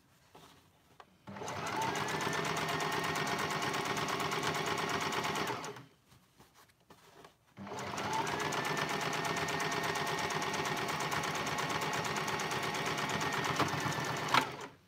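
Electric domestic sewing machine stitching a seam through fabric, in two runs of about four and six seconds with a short stop between. Each run picks up speed at the start and then holds a steady fast stitching rhythm.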